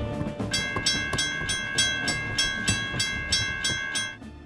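A sound effect on the soundtrack: a held, high whistle-like tone over an even clattering rhythm of about three beats a second. It starts about half a second in and cuts off at the end.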